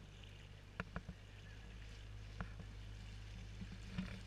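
Small open canal boat's motor running steadily at cruising speed, a low even hum with water washing past the hull. A few sharp knocks: three close together about a second in and one more a second and a half later.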